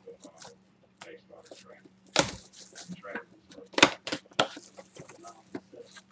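A thick Playbook booklet trading card being handled and opened out, with two sharp snaps about two and four seconds in, under low murmured talk.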